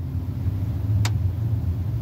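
A car's engine running, heard from inside the cabin as a steady low rumble. One sharp click comes about a second in.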